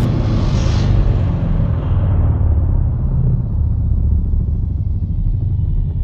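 Deep cinematic rumble of an intro soundtrack, its bright hiss dying away over the first couple of seconds while the heavy low rumble carries on, with faint higher tones coming in during the second half.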